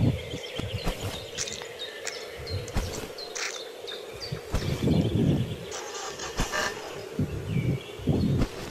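Birds chirping in short calls over a steady low hum, with bouts of low rumbling on the microphone, the strongest about five seconds in.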